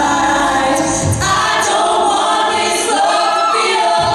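Mixed-voice a cappella group singing sustained chords of a pop arrangement into microphones, with no instruments. A low bass note sounds about a second in, after which the lowest voices drop away.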